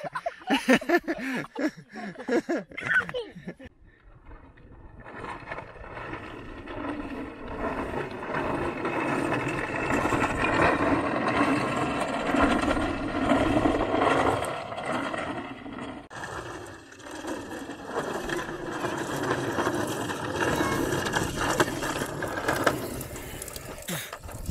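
Hard plastic wheels of a child's ride-on toy car rolling over rough concrete: a steady rattling rumble that starts about five seconds in, drops out briefly past the middle and picks up again.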